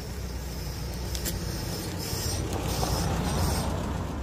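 A road vehicle passing nearby over a steady low rumble, growing louder to a peak about three seconds in and then easing off.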